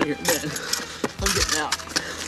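Small metal objects jingling and clinking in a run of quick, sharp clicks, with two low thuds a little past the middle.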